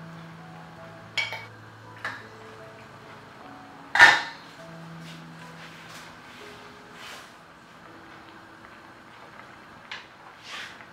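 Kitchen utensil clatter: a wooden spoon stirring and knocking against a stainless steel frying pan of cream sauce, a few short clinks with one sharp knock about four seconds in, over soft background music.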